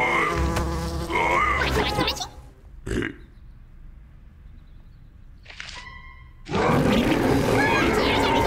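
Cartoon housefly buzzing around, mixed with a bear's grunting, for about the first two seconds; then a quieter stretch with a single short knock, and a burst of loud music and commotion near the end.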